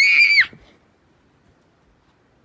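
A child's short, high-pitched scream that rises sharply in pitch, holds briefly, then drops and cuts off about half a second in.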